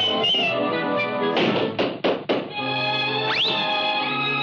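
Cartoon orchestral score playing, broken about a second and a half in by three quick thumps. Near the end there is a short rising glide in pitch.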